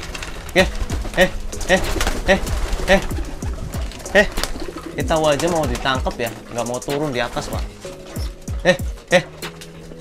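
Domestic pigeons cooing in the loft, among them a male in breeding condition cooing in courtship as he chases hens. The calls repeat every half second or so, with a longer wavering stretch in the middle.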